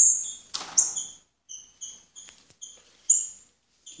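Caged songbirds giving short, sharp chirping call notes, about three a second, with two brief handling scuffs in the first second.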